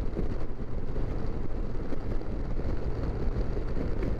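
Steady wind rush over the microphone of a 2021 Yamaha FJR1300 motorcycle cruising at highway speed, with the bike's inline-four engine and road noise underneath.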